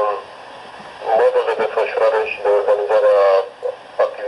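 Speech heard through a telephone line, with a short pause about a second in.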